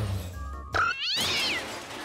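A cat meowing: one long meow, rising and then falling in pitch, about a second in.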